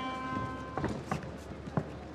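The round-start horn holding one steady note and fading out in the first half second, marking the start of round one. After it comes a quieter arena background with a few short, sharp knocks.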